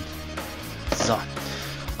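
Quiet background music with steady low notes, with a light knock of a plastic Beyblade part being set down on the plastic stadium.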